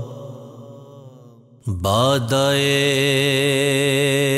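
Male voice singing an Urdu/Punjabi devotional manqbat. A held note dies away over the first second and a half. Then a new line starts with a rising swoop into a long held 'salaam' with a slight vibrato.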